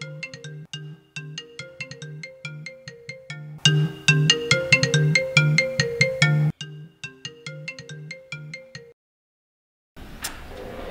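Smartphone ringtone ringing for an incoming call: a repeating melodic tune over a clicking beat, louder for a few seconds in the middle and cutting off about a second before the end.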